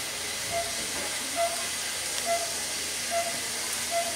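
Patient monitor's pulse-oximeter beeping, one short mid-pitched beep for each heartbeat, five in a row a little under a second apart (a pulse of about 70 a minute), over a steady hiss.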